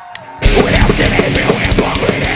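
A single sharp click, then about half a second in a live heavy metal band comes in loud: distorted guitars and rapid, driving drums.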